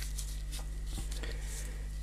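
Gloved fingers rubbing and handling a plastic BIC pen barrel while wiping epoxy putty off it: faint scraping with a few small clicks, over a steady low electrical hum.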